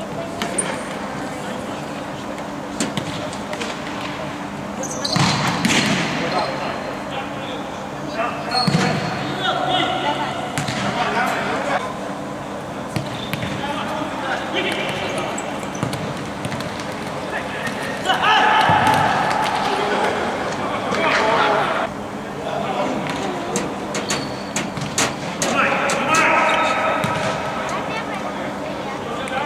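A futsal ball being kicked and bouncing on a hard indoor court, many sharp knocks scattered through, with players' voices calling out at several points.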